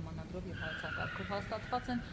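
People talking, with a high drawn-out squeal, falling slightly in pitch, that starts about half a second in and lasts about a second.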